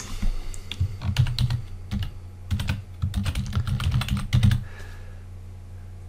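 Computer keyboard typing: quick runs of keystrokes that stop about three-quarters of the way through, leaving only a steady low hum.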